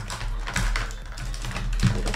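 Handling noise on a clip-on microphone: fabric and hair rubbing and scraping against the mic, with dense rustling, small clicks and a low rumbling thump.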